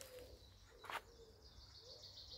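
Near silence: faint outdoor ambience with a faint, wavering bird call and a single click about a second in.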